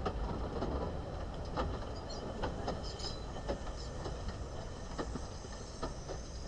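Narrow-gauge steam locomotive Palmerston rolling past slowly, with a low rumble and irregular clicks of its wheels over the rails.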